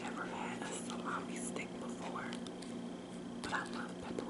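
A woman whispering close to the microphone in short phrases, over a steady low hum.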